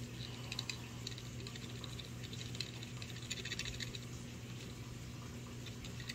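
Faint, irregular ticking and rustling as powdered nitrate-test reagent is tapped from a paper packet into a small glass sample vial, the ticks busiest in the middle. A steady low hum runs underneath.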